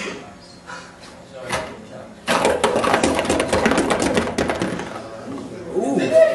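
Ping pong balls clattering down through a cardboard and clear-plastic ball sorter: a burst of rapid rattling clicks about two seconds in, lasting about two seconds, then tailing off as the balls settle in the bottom compartments.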